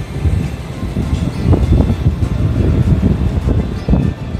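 Low rumble of a JR West 227-series electric train beside the platform, with background music over it.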